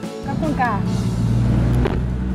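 Street traffic: a steady low rumble of idling and passing vehicle engines, with a short voice about half a second in and a sharp click near the end.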